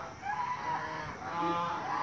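Chickens calling from inside a poultry shed: two drawn-out hen calls, one in each half.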